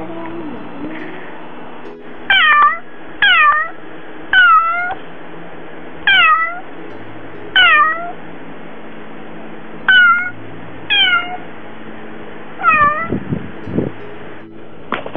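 A Siamese-mix cat meowing eight times, at intervals of one to two seconds. Each meow is short and falls in pitch. These are the calls of a cat lonely at being left home alone.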